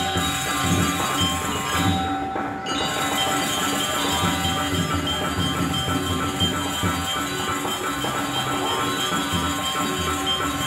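Live Balinese gamelan ensemble playing: bronze metallophones and gongs ringing in a steady, pulsing rhythm.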